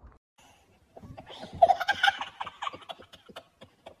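Laughter from a man and young children, starting about a second in after a brief hush, mixed with short clicks and handling noises close to the phone's microphone.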